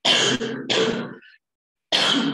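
A woman clearing her throat with two harsh rasps about half a second apart.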